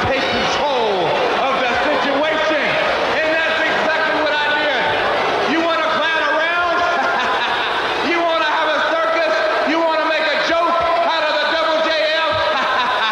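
A man's voice speaking continuously.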